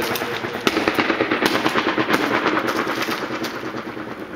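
Rapid rattle of sharp cracks with stronger ones every half second or so, fluttering on as fast repeating echoes between the curved steel walls of a water tower tank.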